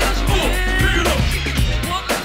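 Early-1990s hip hop track playing with no rapping: a deep, steady bass line and drum hits, with high sliding vocal-like sounds over the beat.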